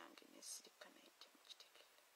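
A woman's very soft, whispered speech under her breath, with a hissed 's' sound about half a second in and a few small mouth clicks, fading to near silence near the end.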